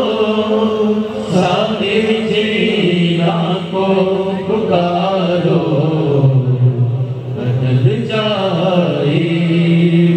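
A group of men chanting an Islamic devotional song together into microphones with no instruments: long held notes that slide between pitches.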